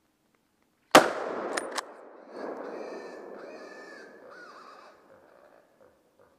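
A single rifle shot about a second in, sharp and loud, its report rolling away through the woods. Two sharp metallic clicks follow within a second, then three harsh calls over the next few seconds as the sound dies away.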